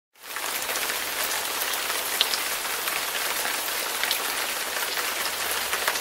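Steady hiss of falling water, like rain on a surface, starting just after the beginning and holding level, with a few faint ticks in it.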